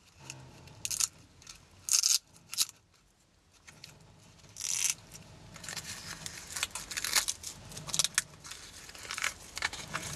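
Plastic wrap crinkling and a stiff shell of PVA-glued book paper and gauze crackling as the wrap is worked loose and pulled out from inside it. First a few separate rustles, then near-continuous crackling in the second half.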